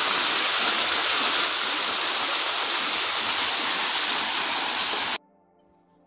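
Artificial waterfall: water pouring down a rock face in a steady rushing hiss, which cuts off suddenly about five seconds in.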